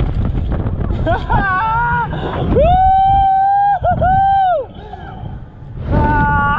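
Riders on a swinging thrill ride yelling: short rising cries about a second in, then two long held high yells with a brief break between them. Wind buffets the microphone with a low rumble in the first half.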